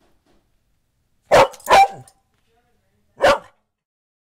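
A dog barking: two quick barks about a second and a half in, then a single bark near the end.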